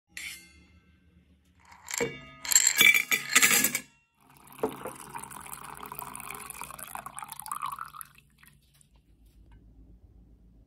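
Metallic clinks and rattles as a metal tumbler is handled and opened, then coffee poured from a stainless steel French press into the tumbler, a steady pouring for about four seconds that stops about two seconds before the end.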